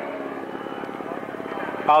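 A small model-airplane engine running steadily at one constant pitch, with a fast, even buzz.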